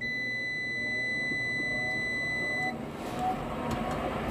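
A multimeter's continuity beeper sounds one steady high beep for nearly three seconds as the new universal furnace pressure switch closes, which is too soon in its adjustment. Under it the combustion blower motor spins up, a faint rising whir with a growing rush of air.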